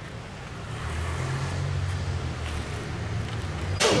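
A road vehicle's engine running by on the street, a low hum that swells about a second in and eases near the end.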